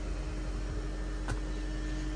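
Steady low background hum with a faint hiss, broken by one short click just over a second in.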